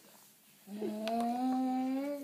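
One long hummed 'mmm' from a person's voice, steady and rising slightly in pitch, starting about two-thirds of a second in.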